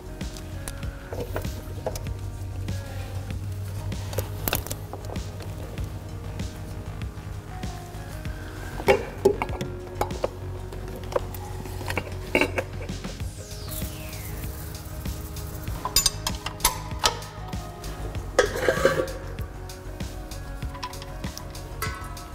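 Background music over scattered metallic clinks and clicks of hand tools, with the sharpest knocks in the second half.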